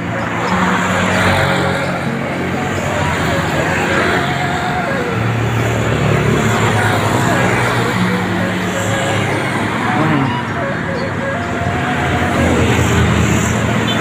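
Road traffic of cars and motorcycles going by, with background music laid over it, its melody moving in held notes that step up and down.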